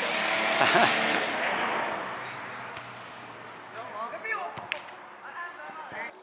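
Outdoor background: a rushing noise that is loudest at the start and fades away over the first three seconds, then faint children's voices from a game of football with a knock or two, as of a ball being kicked.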